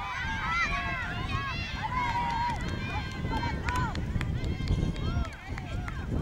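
Many overlapping high-pitched shouts and cheers from children's voices, calling out all through, over a low irregular thudding of ponies' hooves cantering on grass.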